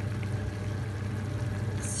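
Steady low hum with a light hiss underneath: kitchen background noise around a tajine cooking.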